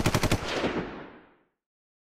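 Rapid clatter of bagged comic books being flipped through in a cardboard long box: a quick run of sharp plastic-bag clicks that tapers off within about a second and a half.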